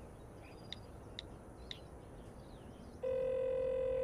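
A few faint light clicks, then about three seconds in a single steady telephone ringback beep starts and lasts about a second and a half: an outgoing call ringing on the line, waiting to be answered.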